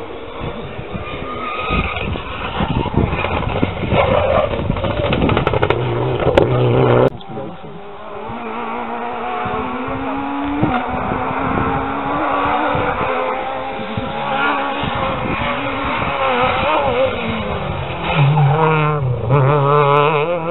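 Rally car engines running hard on a special stage, their pitch climbing and dropping again and again through gear changes. An abrupt cut about seven seconds in leads to another car's engine rising and falling as it passes.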